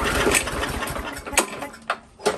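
Recoil starter cord pulled on a Briggs & Stratton lawn mower engine, cranking it over. The sound dies away about a second and a half in, without the engine settling into a run.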